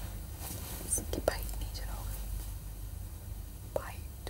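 Faint, indistinct voices of people in a room over a steady low hum, with a few short spoken fragments about a second in and again near the end.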